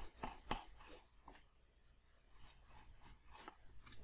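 Faint, scattered clicks and scratchy taps of small hand tools being handled, with a few sharper ones in the first second.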